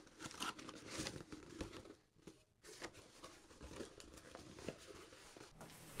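Faint rustling and scattered light clicks of a cardboard box and its contents being rummaged through.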